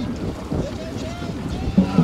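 Wind buffeting the microphone with distant shouting voices of dragon boat crews and spectators; a louder shout comes near the end.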